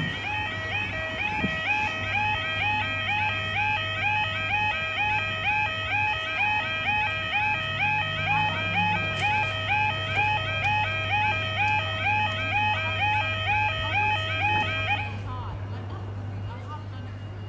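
UK level crossing audible warning alarm sounding its repeating yelping tone, about two cycles a second, then cutting off suddenly near the end.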